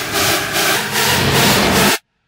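Hardstyle track build-up: a pulsing white-noise riser that grows louder and cuts off suddenly at the end.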